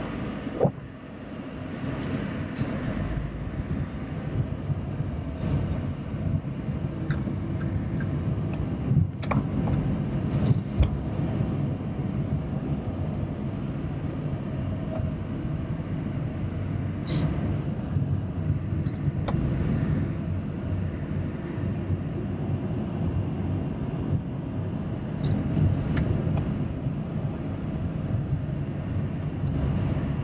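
Steady low engine and tyre rumble heard inside a moving car's cabin, broken by a few brief sharp clicks or knocks.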